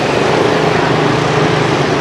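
Street traffic with a motor vehicle's engine running close by: a loud, steady drone with a low hum under it.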